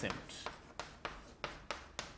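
Chalk on a blackboard as a word is handwritten: a series of short, sharp taps and scrapes, about three a second.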